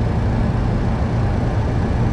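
Steady rushing noise with a low hum inside a Boeing 737 cockpit, from airflow and engines as the airliner flares a few feet above the runway.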